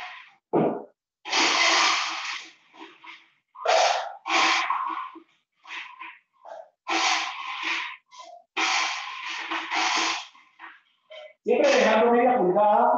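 Ice being scooped from an ice bin into a glass: several separate bursts of crunchy, hissing noise, each lasting up to about a second and a half.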